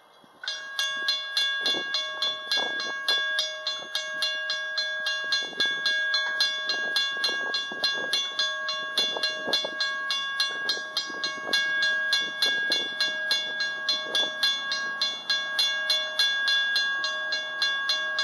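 Railroad grade crossing warning bells start ringing about half a second in, with rapid, evenly spaced strikes over a steady ringing tone, as the crossing activates for an approaching train.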